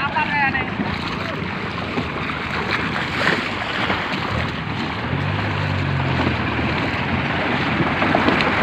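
Fast-flowing floodwater rushing, with wind buffeting the microphone. A low engine hum comes in about four seconds in and fades out near seven seconds.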